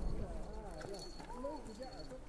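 Faint voices of several people talking at once in the background, their pitch rising and falling, with a faint thin steady high tone underneath.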